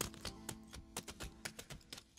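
A run of quick, irregular clicking taps over the ringing end of a song, whose held chord fades away.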